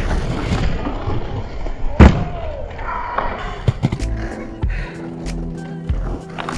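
Inline skate wheels rolling over stone paving with knocks and clacks, and one loud thud about two seconds in. Music with a steady pulsing bass comes in about four seconds in.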